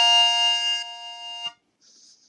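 The final held note of the opening theme tune, a single sustained pitch with rich overtones, fading and cutting off about one and a half seconds in.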